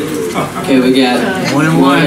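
A man's voice singing into the microphone in long, held notes, with a cooing quality.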